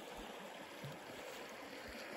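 Snowmelt-swollen creek flowing: a faint, steady rush of running water.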